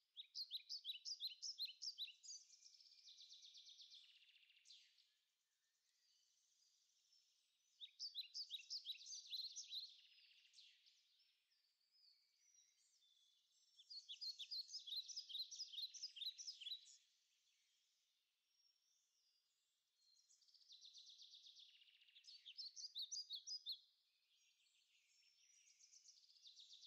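Faint songbird singing in several phrases of quick repeated high chirps, each lasting a few seconds, with pauses between.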